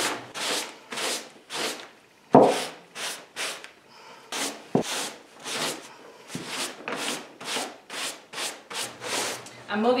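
A sponge rubbed back and forth over crumpled, glaze-coated paper, about two to three wiping strokes a second, as paint is wiped off the raised creases. About two and a half seconds in there is a sharper thump, the loudest sound.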